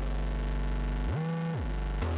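Dark background music: a sustained low synthesizer drone that glides up in pitch about a second in and slides back down half a second later.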